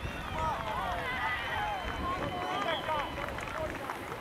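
Players, coaches and spectators shouting and calling out over one another during a youth soccer match, with a thin, faint, steady high tone for about two seconds in the middle.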